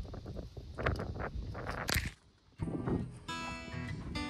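Gusty wind buffeting the microphone, with scattered knocks, for the first two seconds. Acoustic guitar music then comes in about three seconds in.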